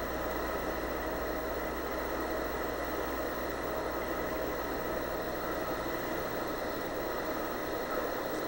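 Steady hiss with a low hum from an old audio tape recording being played back, in a pause between spoken lines.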